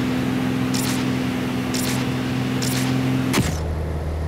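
Propeller engine of an aerobatic stunt plane droning steadily in flight, with a few short bursts of hiss about once a second. Near the end the drone drops to a lower pitch.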